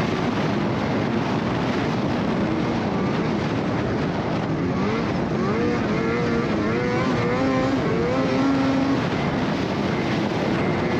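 Polaris Matryx XCR 850 snowmobile's two-stroke engine running while riding along a trail, its pitch rising and falling with the throttle, over a steady rush of noise.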